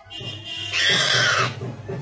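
A wild boar squealing once, a loud shrill cry of under a second starting about three-quarters of a second in, as a tiger seizes it, over background music.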